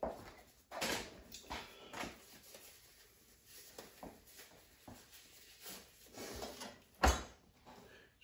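Disposable gloves being pulled on and adjusted: soft, intermittent rustling and small snaps of thin glove material, with one sharper click about seven seconds in.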